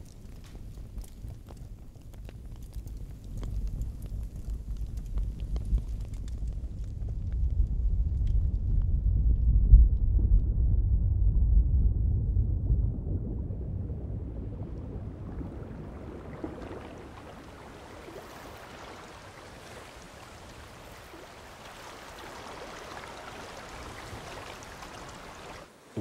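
A designed sound morph: a low roaring fire with faint crackles swells to its loudest about ten seconds in. It then crossfades into water lapping, first filtered so that it has no high frequencies, then gradually opened up until, over the last ten seconds, the roar has turned into the hiss of lapping water.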